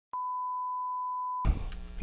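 A single steady electronic beep, one pure tone held for just over a second, accompanying the channel's intro logo card like a TV test tone. It cuts off suddenly and is followed by faint room noise.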